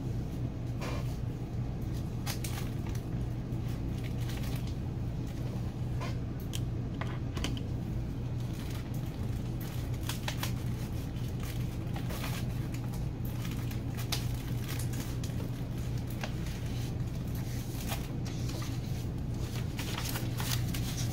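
Steady low hum with scattered light clicks and rustles, typical of craft supplies being handled.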